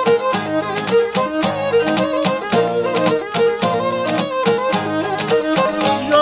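Cretan lyra playing an instrumental melody over a laouto and an acoustic guitar strumming a steady rhythm, a traditional Cretan music ensemble.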